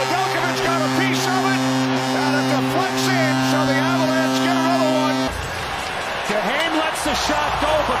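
Arena goal horn sounding a steady low tone over a cheering crowd, signalling a home-team goal. The horn cuts off suddenly about five seconds in, and the crowd noise carries on.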